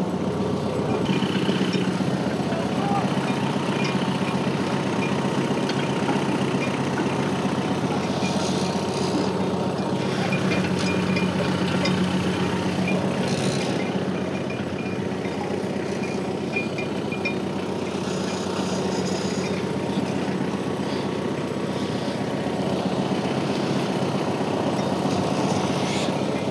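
A compact tractor's engine runs steadily at a constant pitch while it pulls a bulb-planting implement through the turf.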